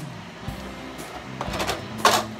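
Background music with a steady beat of about one thump a second. About one and a half seconds in there is a brief scraping rasp, a wooden spoon stirring stiff peanut brittle in a metal pot.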